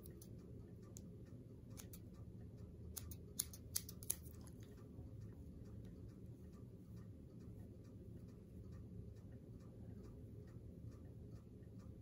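Three quick, sharp snips of small fly-tying scissors a little over three seconds in, over a faint, steady clock ticking and a low room hum.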